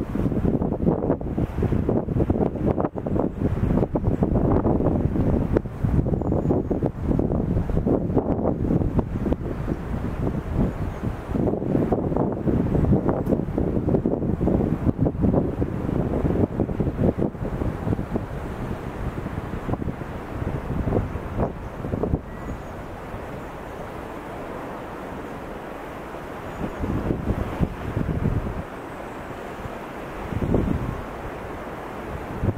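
Wind buffeting an outdoor microphone in irregular, rumbling gusts. It dies down about two-thirds of the way through and picks up again briefly near the end.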